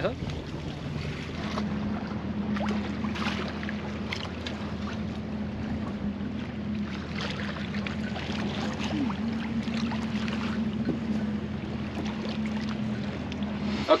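Wind on the microphone and water noise aboard a small sailboat, with a steady low hum underneath and a few faint knocks.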